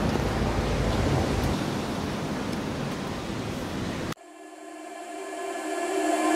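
Steady rushing outdoor noise with a low rumble that drops away after about a second and a half. It cuts off suddenly about four seconds in, and background music fades in.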